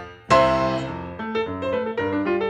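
Solo grand piano playing jazz. A loud full chord is struck about a third of a second in and rings out, then lighter notes follow over a moving bass line.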